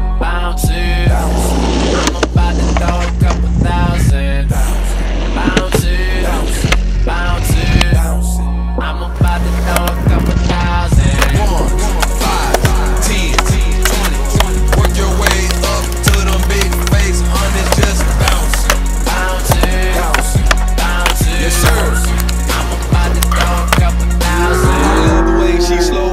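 Hip-hop music with a heavy, steady bass, mixed with skateboard sounds: wheels rolling on concrete and the sharp clacks of boards popping and landing.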